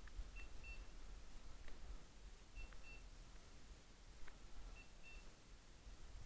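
A hunting dog's beeper collar sounding faint, high double beeps about every two seconds, the repeating pattern a beeper gives when the dog is standing on point. A few faint clicks of twigs and movement.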